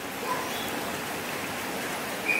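Steady rain falling on wet ground and puddles.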